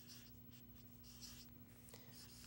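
Faint scratching strokes of a marker pen writing on a paper pad, coming in short separate strokes.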